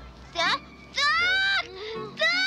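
A boy crying out with his tongue frozen to a metal pole: high, bleat-like wails. A short cry comes about half a second in, then a longer one about a second in that rises and falls in pitch.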